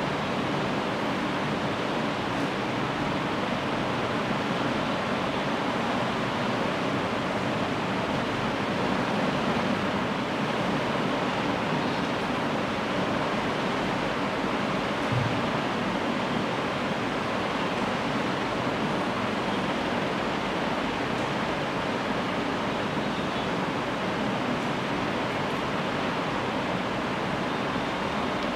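Steady, even hiss of background noise with no distinct knocks, clicks or voices.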